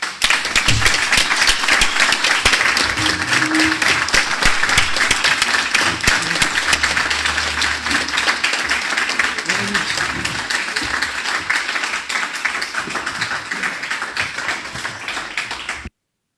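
Sustained applause from a roomful of people, many hands clapping, easing slightly over time and cutting off abruptly near the end.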